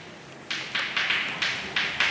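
Chalk writing on a chalkboard: a quick run of short taps and scratches, about four or five strokes a second, beginning about half a second in.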